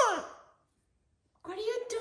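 Amazon parrot vocalizing: a call that slides down in pitch and fades in the first half second, a pause, then another drawn-out, wavering call from about one and a half seconds in.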